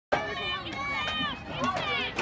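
Several high-pitched voices shouting and cheering over one another at a baseball game, calling encouragement to the batter, with a couple of faint claps.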